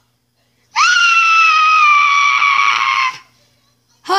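A child's long, high-pitched scream, starting about three-quarters of a second in and lasting about two and a half seconds, its pitch sliding slowly down.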